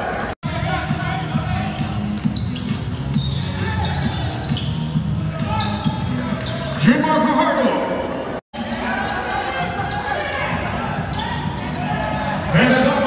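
Court sound of a basketball game in a big, echoing hall: a basketball bouncing on the hardwood and voices calling out. The sound cuts out completely twice, about half a second in and again past eight seconds.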